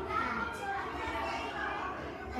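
Indistinct children's voices and speech, with no clear words.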